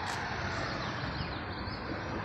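Steady background noise of street traffic, with a few faint high chirps over it.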